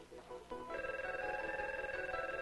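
Office desk telephone ringing with a steady electronic tone. One ring starts about half a second in and carries on past the end.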